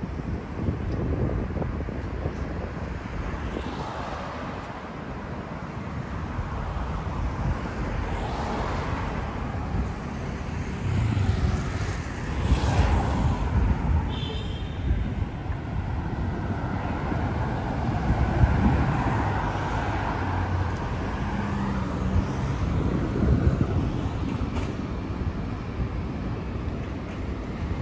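Road traffic passing on a city street: a steady low rumble of engines and tyres, with several vehicles swelling and fading as they go by. A brief high beep sounds a little past the middle.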